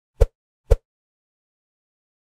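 Two short, low sound-effect hits about half a second apart, the beats of a logo intro sting.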